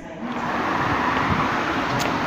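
Steady rushing noise of street traffic, rising in about a third of a second and then holding even.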